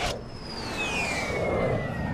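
Logo sting sound effect: a sharp hit, then a single whistling tone that glides down in pitch and keeps falling slowly, over a low rumble.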